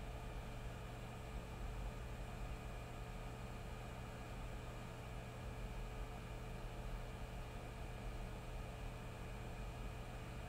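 Hot air rework station blowing steadily on solder paste, a faint even hiss of air with a steady low hum underneath.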